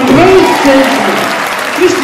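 Audience applauding in a large hall, with a man's amplified voice over the clapping.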